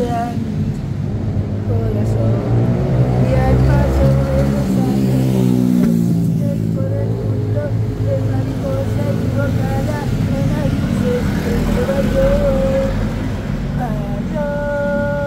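A man singing unaccompanied, holding long wavering notes. Through the first half a car engine rumbles and revs close by, then fades about six seconds in.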